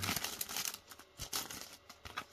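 Thin clear plastic bag crinkling as it is opened by hand, loudest in the first second and fading to faint rustles.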